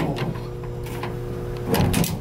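A steady electrical hum with a few constant tones inside the elevator car, ending in a short knock near the end.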